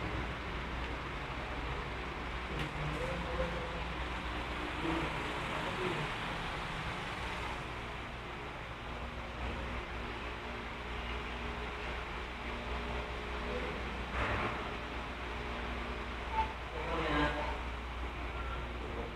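Steady background ambience of low rumble and hiss, with faint voices now and then and brief louder sounds about two-thirds of the way through and near the end.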